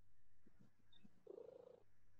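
Near silence on a video call: a faint steady hum, with one faint, short, low murmur about a second and a half in.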